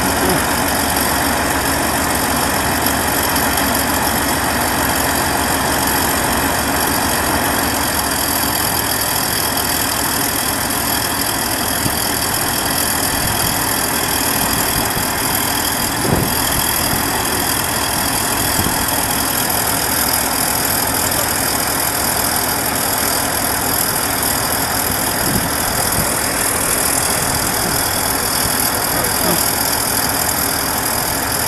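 Kirovets K-700 tractor's diesel engine running steadily, with one short knock about sixteen seconds in.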